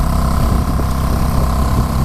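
Small sailboat's outboard motor running steadily under way, a loud, even low drone with a faint steady whine above it, while the boat motor-sails.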